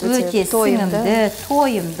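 Sliced mushrooms and vegetables frying in a pan with a steady sizzle, under a woman's voice talking.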